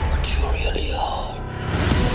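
Film-trailer soundtrack in a short lull: a low bass rumble carries on under a brief whispered, breathy voice, and the full music comes back in near the end.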